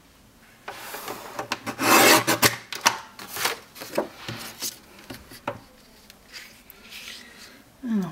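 A sheet of paper cardstock being handled: rubbing and sliding with a rustle, loudest about two seconds in, followed by a run of short taps and rustles as it is laid down on the album cover.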